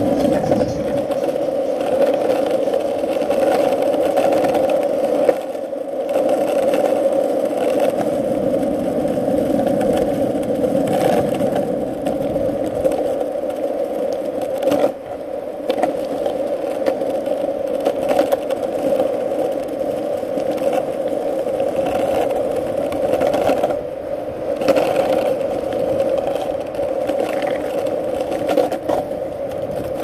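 Sector 9 skateboard wheels rolling over rough, cracked asphalt: a steady rolling rumble with scattered clicks as the wheels cross cracks. The sound dips briefly a few times.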